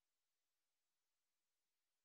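Near silence: only a faint, even hiss of the recording's noise floor.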